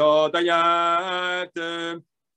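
A solo voice chanting a Sanskrit Vedic mantra on a steady reciting pitch: one long held syllable of about a second and a half, then a short one.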